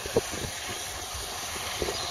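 Farm tractor running steadily at a distance under a constant hiss, with no clear engine note; two short thumps sound about a quarter second in and near the end.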